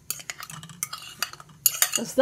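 Metal fork scraping and clinking against a ceramic plate as mashed fruit is pushed off into a glass bowl: a run of light clicks and scrapes, louder near the end.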